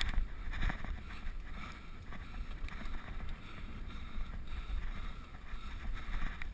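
Mountain bike riding down a dirt singletrack: a steady low rumble of wind buffeting the camera microphone and tyres on dirt, with a few light rattles and knocks from the bike in the first second.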